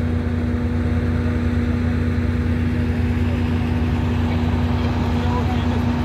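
Heavy truck diesel engine running steadily at a constant speed, a loud even hum, from the wrecker trucks rigged with cables to winch out the fallen truck.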